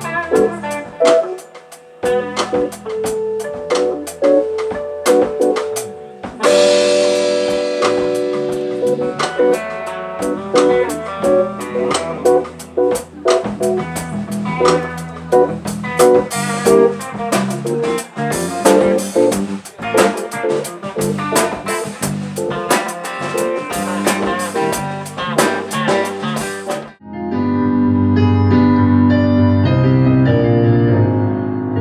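A small live band playing an instrumental: electric guitar leading over keyboard and a drum kit. About three seconds before the end the band cuts off suddenly and solo electric piano chords take over.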